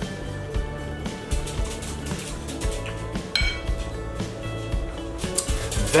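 Background guitar music with scattered light clinks of cutlery on a plate, one brighter ring about halfway through.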